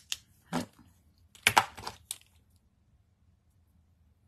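A few light taps and paper rustles from small die-cut paper letters being pressed and nudged into place with fingertips and a pointed craft pick tool on a grid mat. The taps come in the first two seconds, the loudest about one and a half seconds in, then it goes quiet.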